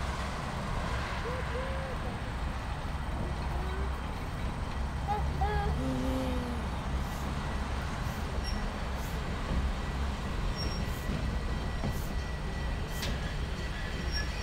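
Slow-moving passenger train approaching, a steady low rumble, with a few sharp clicks from the wheels on the rails toward the end.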